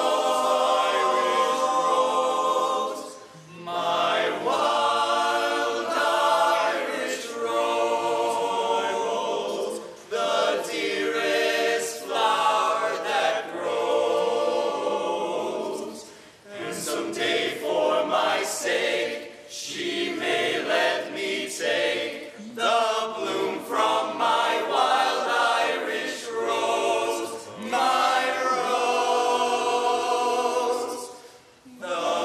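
Male barbershop chorus singing a cappella in close harmony, in sung phrases with brief pauses between them.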